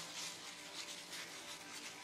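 Faint rubbing of a thin plastic food glove against the palm as hands roll a ball of purple sweet potato onde-onde dough around its mung bean filling.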